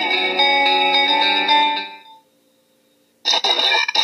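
A short radio music sting: one held, chord-like musical tone that rings for about two seconds and fades out, then a second of silence before music with a voice starts near the end.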